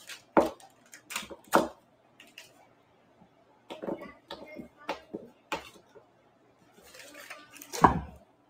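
Knife knocking on a kitchen countertop while cutting a stick of butter, with handling of its wrapper: sharp separate taps, a few in the first two seconds, more around four to six seconds in, and a louder cluster near the end.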